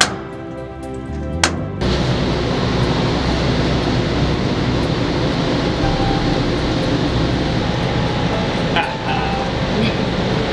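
Background music broken by two sharp metal strikes about a second and a half apart, a sledgehammer hitting a ship's anchor windlass gear. From about two seconds in, a loud steady rushing noise takes over.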